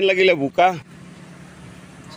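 A person's voice speaking briefly, then a steady low background hum and hiss.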